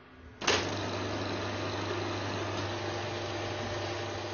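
A reel film projector switched on with a sudden click about half a second in, then running with a steady mechanical whir and a low hum.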